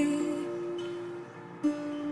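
Acoustic guitar notes ringing out under the fading end of a woman's sung note, with a new note picked about one and a half seconds in.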